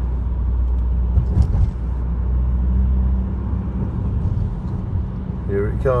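Car engine and road noise heard from inside the moving car: a steady low drone, with a few brief knocks about a second and a half in.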